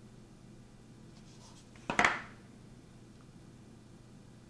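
A clear plastic card case and its cardboard box being handled: one brief scrape about two seconds in, otherwise a quiet room.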